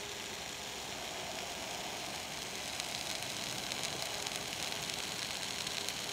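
Hot dogs sizzling in a frying pan on a small coal-fired stove: a steady hiss that grows a little louder about halfway through.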